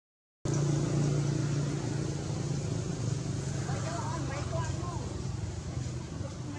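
A steady low motor hum, with faint wavering voices about halfway through. The sound drops out completely for a split second at the very start.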